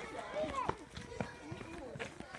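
Young children's voices chattering and calling out over footsteps as a group runs and walks across a tarmac playground.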